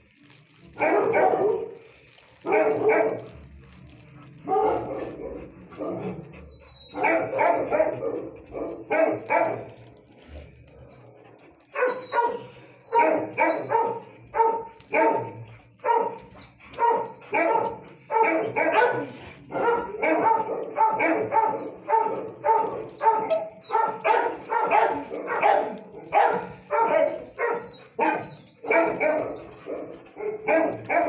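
A dog barking repeatedly, in short runs with pauses at first, then a steady string of about two barks a second from about halfway on.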